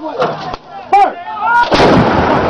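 A voice calls out briefly, then near the end an artillery gun fires: one sudden, loud blast whose rumble carries on.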